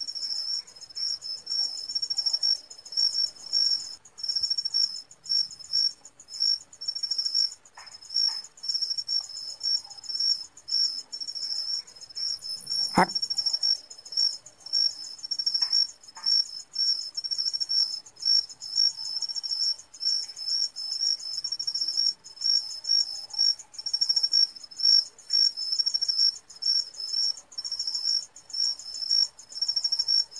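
Night insects chirping steadily in short, high, repeated pulses, with a single sharp click about halfway through.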